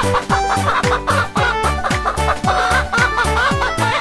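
Cartoon hens clucking in short repeated bursts over upbeat instrumental children's music with a steady beat.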